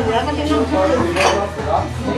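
Dishes and cutlery clinking, with one sharp clink about a second and a quarter in, amid people talking.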